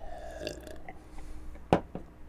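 A quiet gulp of beer from a pint glass, then a single sharp knock about 1.7 seconds in as the glass is set down on the bar top.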